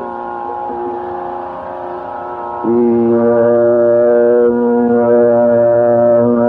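Carnatic classical music: a gently moving melodic line, then, about two and a half seconds in, a long, deep note is held steady to the end.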